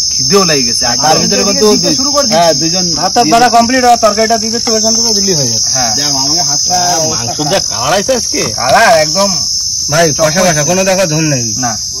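Steady, high-pitched drone of insects from the mangrove scrub, with a man's voice over it.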